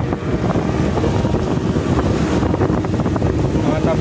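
Wind buffeting the microphone of a passenger on a moving motorcycle, with steady engine and road noise underneath.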